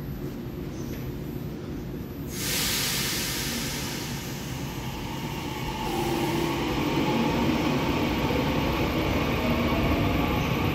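Taiwan Railway EMU900 electric commuter train pulling away from a platform. About two seconds in comes a sudden hiss of air. From about six seconds the motor whine rises and the running sound grows as the train gathers speed.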